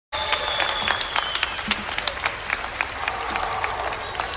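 A large arena crowd applauding, with many sharp individual claps standing out from the steady wash of clapping.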